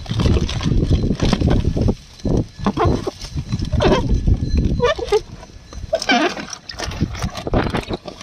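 Plastic fish-transport bags crinkling and rustling as they are gripped and worked in the tank water, with water sloshing and rough handling noise on the microphone. A few short pitched calls come through in the middle.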